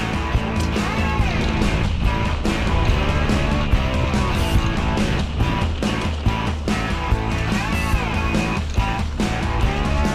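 Background music with guitar over a steady beat.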